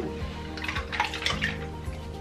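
Water splashing and sloshing in a filled sink as hands reach in and lift a makeup brush, the splashes strongest about a second in. Background music with steady tones plays underneath.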